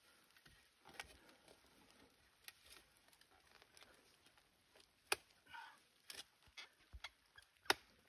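A short-handled shovel digging into wet dirt and roots: a few faint scrapes and sharp knocks, the sharpest near the end.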